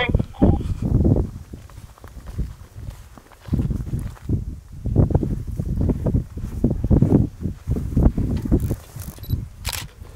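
Irregular low buffeting and rustling on an outdoor microphone, coming in uneven bursts, with one sharp click just before the end.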